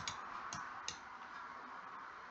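Three faint computer mouse clicks in the first second, the last two about a third of a second apart, over low background hiss.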